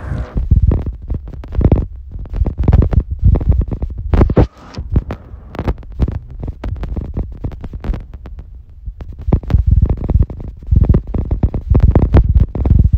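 Wind buffeting and handling noise on a hand-held phone's microphone: loud, irregular low rumbles and thumps, with a brief lull about four and a half seconds in.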